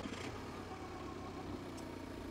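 Car engine sound effect running steadily at a low, even hum, easing down slightly in level.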